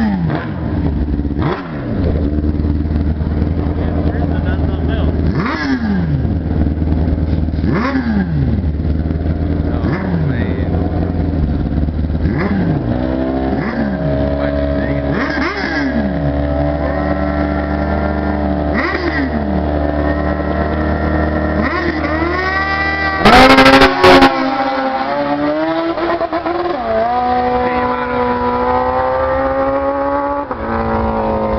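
Suzuki sportbike inline-four engines at a drag-strip start line, revved again and again, each rev dropping back in pitch about every two seconds. About three-quarters of the way in, a hard launch sounds as a very loud burst that overloads the microphone, and the engine note then climbs steadily as the bikes pull away down the strip.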